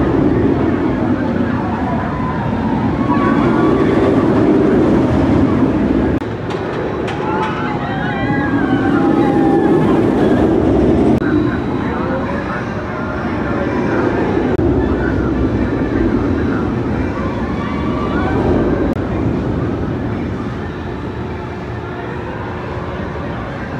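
Bolliger & Mabillard inverted roller coaster train running through its elements, a loud rumble of wheels on steel track that swells and fades in long waves as the train passes, with riders screaming over it.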